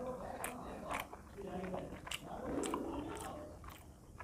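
Close-miked chewing of a hand-fed mouthful of rice with fish curry, with several sharp, wet mouth clicks and lip smacks.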